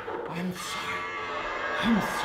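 Two short, low vocal moans, each rising and then falling in pitch, about half a second in and again near the end, over a faint steady drone.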